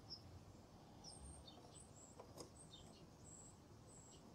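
Near silence: faint, high bird chirps now and then, with two faint clicks a little over two seconds in.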